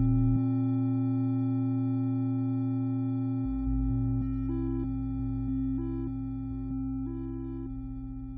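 XSRDO Doppler Modular System software synthesizer, one VCO through a VCA, playing held electronic tones over a strong low note. In the second half, short notes change about once a second, and the sound slowly fades.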